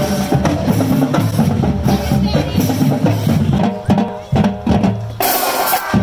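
Marching band playing: the drumline keeps a steady beat on snare and bass drums, and brass chords come in during the second half.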